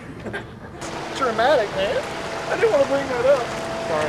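A person's voice making high, wavering, sung-like sounds, the pitch sliding up and down, over a steady hiss that begins suddenly about a second in.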